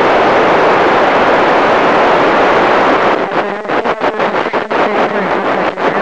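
FM radio receiver tuned to the International Space Station's amateur downlink giving loud, steady static hiss while no voice is being transmitted. About halfway through the hiss breaks up into choppy crackling as the signal comes back in.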